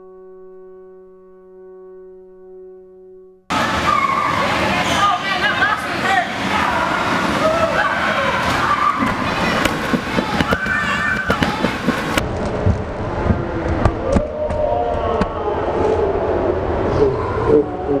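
A held musical chord of several steady notes, then an abrupt cut about three and a half seconds in to loud, busy young voices shouting and talking over one another, with knocks and bumps, for the rest of the time.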